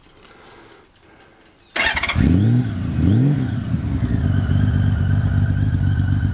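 1998 Honda Valkyrie's flat-six engine cold-started a little under two seconds in, blipped twice, then settling into a steady idle to warm up. It breathes through aftermarket Mach T pipes with the baffles in.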